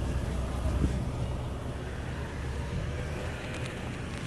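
Steady low rumble of road traffic and truck engines.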